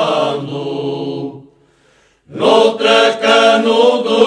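An Alentejo folk choir singing cante alentejano unaccompanied: a held choral note fades out about a second in. After a brief pause the voices come back in together on the next phrase.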